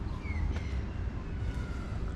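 Outdoor background: a steady low rumble, with a faint, short, high falling chirp about a third of a second in.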